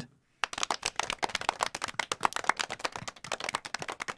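Hand clapping: a quick, dense run of sharp claps that starts about half a second in.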